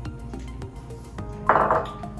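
Background music, with a short clatter of kitchenware about one and a half seconds in as a small glass bowl is set down on the counter.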